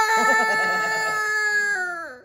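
A young boy crying in one long, high, held wail that slowly sinks in pitch and drops lower near the end. He is afraid of having his loose baby tooth pulled.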